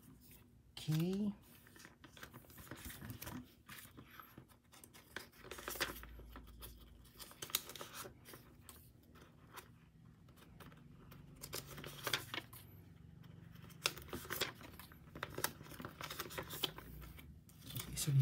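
Photocards being handled and slid in and out of clear plastic binder sleeves: scattered light crinkles, scrapes and taps of card against plastic film throughout. A short voice sound with rising pitch about a second in is the loudest moment.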